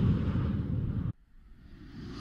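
A whoosh sound effect with a deep rumble, fading and then cutting off abruptly about a second in. After a short near-silent gap, another one starts building near the end.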